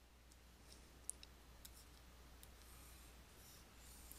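Near silence with a few faint clicks and light scratches from a stylus writing and drawing on a tablet screen.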